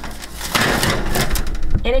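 Metal sheet pan being slid onto an oven rack: a noisy scrape lasting about a second, followed by a spoken remark near the end.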